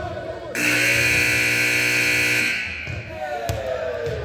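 Gym scoreboard buzzer sounding one loud, steady tone for about two seconds, starting about half a second in. After it, children's voices and a basketball bounce on the hardwood court.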